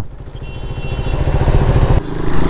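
Motorcycle engine running as the bike rides through traffic, growing steadily louder over the two seconds.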